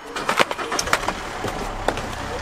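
Knocks and clatter of a cardboard snack box and packaging being handled inside a car, several sharp knocks in a row. A low car engine rumble sets in about a second in.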